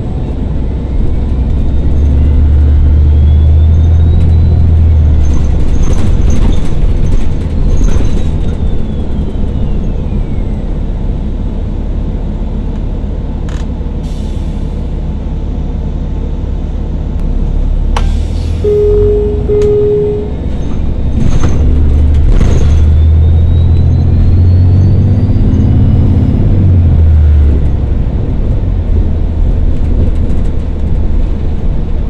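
Interior sound of a 2013 New Flyer XDE40 diesel-electric hybrid bus (Cummins ISB6.7 engine, BAE Systems HybriDrive) pulling away twice. Each time the drive rumbles and the electric drive's whine rises in pitch, then falls as the bus slows, with rattles and clicks throughout. Two short beeps sound just past the middle.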